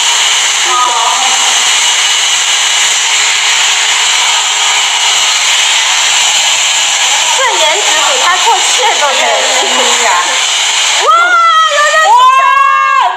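Handheld hair dryer blowing steadily, with faint voices underneath; it cuts off about a second before the end and a loud voice takes over.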